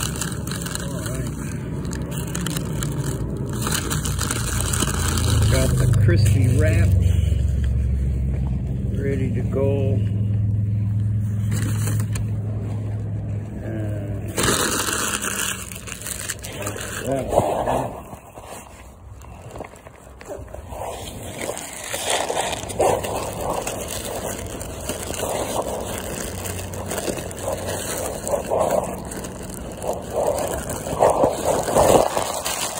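A motor vehicle's engine running close by, a low hum that swells to its loudest about six seconds in and fades out by the middle. After that, a paper food wrapper crinkles and rustles in short, irregular bursts as a sandwich is unwrapped.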